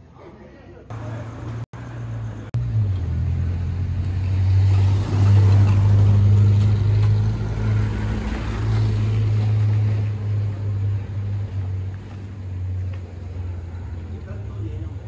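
A vehicle engine idling: a steady low hum that starts about a second in and grows louder through the middle.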